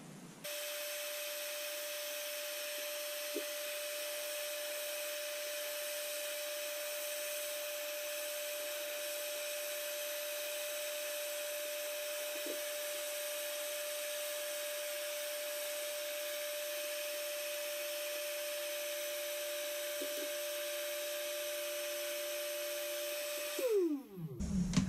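Black and Decker heat gun running with a steady fan whine while heating a metal spoon lure for powder paint. Near the end it is switched off and the whine falls away as the fan spins down. A few faint taps along the way.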